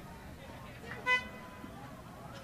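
One short horn blast with a clear pitch, about a second in, with a faint tone trailing after it: a finish-line horn marking a rowing crew crossing the line.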